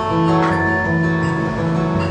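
Acoustic guitar strumming chords in a short instrumental passage, with no singing.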